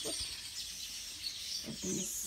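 Small birds chirping and twittering over a steady high-pitched outdoor background.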